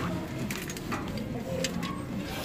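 A bag being pushed into a coin locker compartment: rustling with a few light knocks and clicks against the locker, over a low wavering hum.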